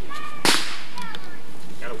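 A single sharp firecracker bang about half a second in, with a short ringing tail.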